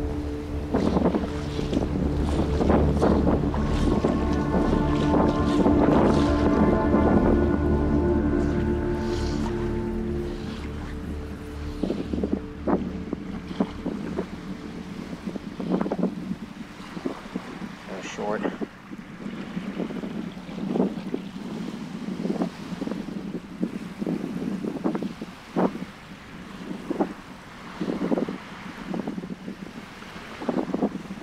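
Background music with sustained chords for about the first twelve seconds, then fading out. After that, wind on the microphone and irregular splashes of shallow water, as from wading.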